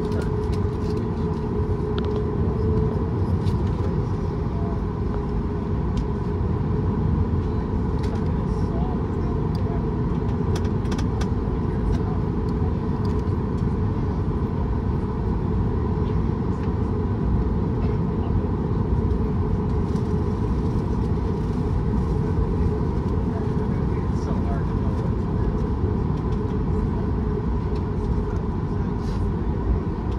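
Cabin noise of a Boeing 737 MAX 8 taxiing: the CFM LEAP-1B engines running at low taxi thrust, a steady hum with a steady high whine over it, heard from inside the cabin.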